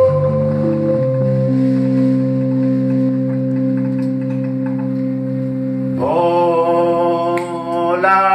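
Live band music: sustained, steady keyboard chords that shift a few times and then hold, like an organ or synth pad. A brighter chord with many overtones comes in about six seconds in and holds to the end.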